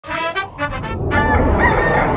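Rooster crowing, cock-a-doodle-doo: short notes first, then a long drawn-out note starting about a second in, over music.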